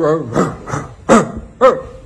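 A man imitating a dog with his voice: a wavering drawn-out note that ends just after the start, then four short barks, the last two the loudest.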